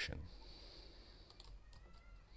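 Faint clicks of a computer keyboard, a few scattered keystrokes as values are typed into a spreadsheet.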